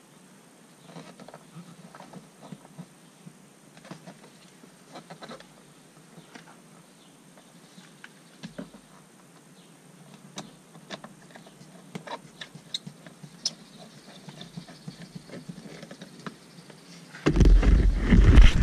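Faint scattered clicks and scrapes of a hand screwdriver turning a small screw into a plastic door-panel handle. Near the end a sudden loud rumbling rub as a sleeve brushes over the microphone.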